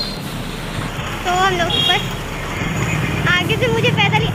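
Busy street ambience: a steady bed of traffic noise, with high-pitched voices calling out nearby, once about a second in and again near the end.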